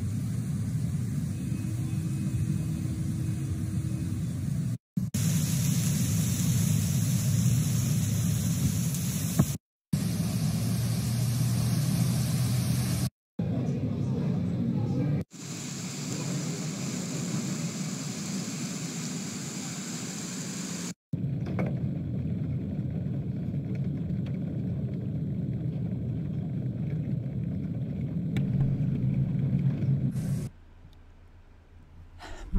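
Rushing floodwater and heavy rain in a flooded street, a steady loud rumbling noise, cut off abruptly for an instant several times.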